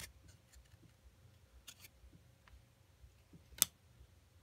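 Baseball trading cards being handled in the hands, one card slid off the stack onto the next: faint ticks of card stock against card stock, with one sharp click about three and a half seconds in.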